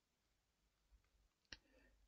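Near silence: room tone, with one faint, short click about one and a half seconds in.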